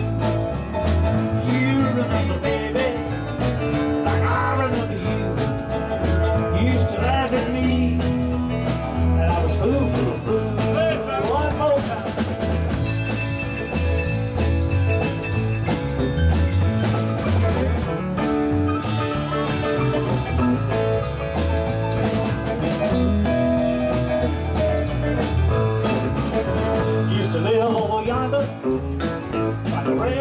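Live band playing an upbeat rock and roll number with a steady beat: electric bass, drum kit, piano, and acoustic and electric guitars.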